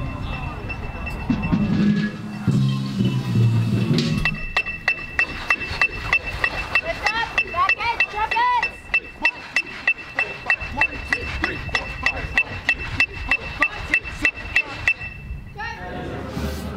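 An electronic metronome clicking evenly, about three times a second, over a steady high beep, keeping time for a drum corps rehearsal. It starts about four seconds in after low-pitched music and voices, and cuts off just before the end.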